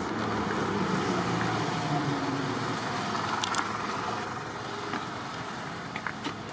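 A motor vehicle running nearby, a steady rumble and hiss that fades after about four seconds, with a few faint clicks.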